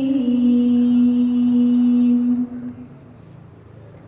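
Quran recitation (tilawah) through a PA system: a reciter's voice holds one long, steady note for about two and a half seconds, then stops, leaving a pause before the next phrase.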